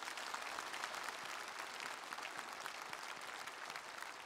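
Large audience applauding steadily, a dense, sustained wash of clapping.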